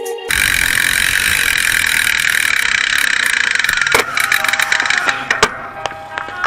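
Steady rushing road and wind noise from a camera riding on a moving bicycle, starting abruptly, with a few sharp clicks and knocks in the last two seconds.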